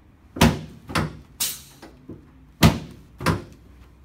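Dull knocks against a padded chiropractic table as the patient's legs are bent up and moved during a Nachlas test: four sharp knocks in two pairs, with a brief rustling rush between the first pair and the second.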